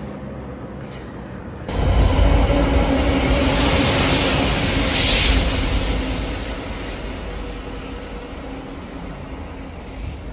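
Diesel locomotive hauling a freight train of tank wagons through a station. The engine's drone and the rolling wheel noise come in abruptly about two seconds in, stay loud for several seconds, then fade steadily as the train moves away.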